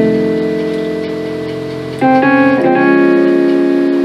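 Keyboard in a piano sound playing drop 2 voiced seventh chords. An F7 chord rings and fades, then about two seconds in a new chord is struck with a quick grace-note flip into it, settling on a B♭ minor 7 that is held.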